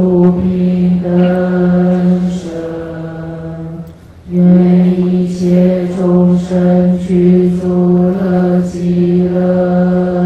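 Buddhist prayer chanting in long held notes on one low pitch, with a brief break about four seconds in.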